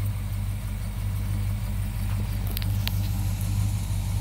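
A 1970 Dodge Coronet's 383 Magnum big-block V8 idling steadily.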